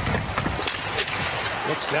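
Ice hockey play on the rink: a few sharp clicks of stick on puck over steady arena noise with a low rumble.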